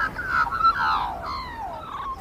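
Birds calling: several overlapping calls that glide downward in pitch.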